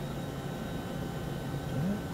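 Steady low mechanical hum with a background hiss and a few faint steady high tones, typical of running machinery or ventilation.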